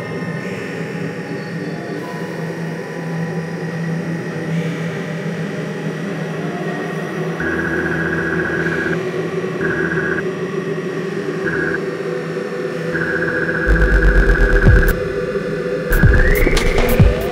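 Experimental electronic free-improvisation music: layered droning hum with a high tone that cuts in and out in blocks from about halfway through, and a loud low throb near the end.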